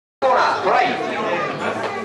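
Several people talking at once: chatter from a small crowd of onlookers.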